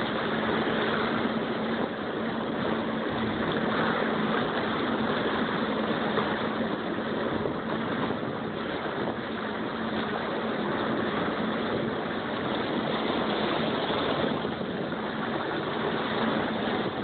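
A motor running steadily with a constant low hum, the soundtrack of a video clip played back through loudspeakers.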